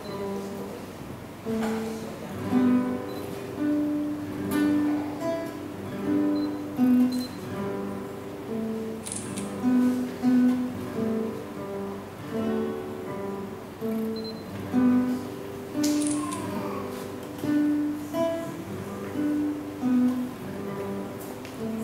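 Two nylon-string classical guitars played together in a simple duet: a steady, even-paced melody of single plucked notes over a lower accompaniment.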